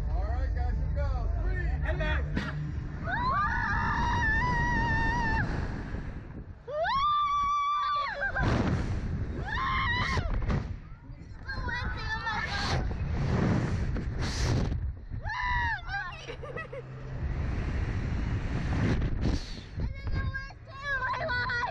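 Riders screaming and laughing aboard a Slingshot reverse-bungee ride as it flings them into the air. A long high-pitched scream comes about seven seconds in and more cries follow near fifteen seconds, over air rushing past the microphone.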